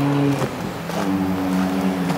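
A vehicle engine running steadily nearby, a low hum that dips briefly and then comes back a little higher in pitch about a second in.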